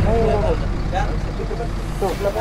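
A steady low rumble that starts suddenly, with a voice speaking briefly over it.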